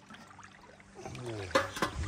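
Faint trickle of water running over the rocks at the shore, then a man saying 'yeah' and two sharp clicks close together near the end.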